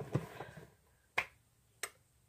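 Two sharp, short clicks about two-thirds of a second apart, near the middle and near the end, in an otherwise quiet room.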